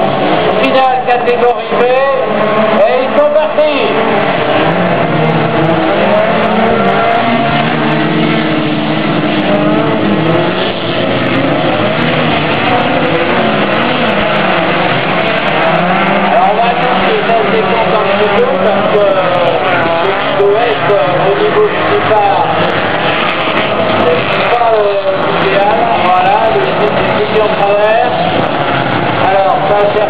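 Several stripped-down race cars racing on a dirt track, their engines revving and running together without pause, pitches rising and falling as the drivers accelerate and lift.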